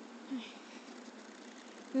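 A steady, faint hiss of outdoor background noise, with one short spoken word near the start.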